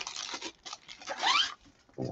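Clear plastic bag being torn open along its perforation: crinkling rustles, then a short rip about a second in.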